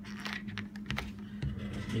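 A few light clicks and rubbing sounds from fingers handling a camera body, over a steady low hum.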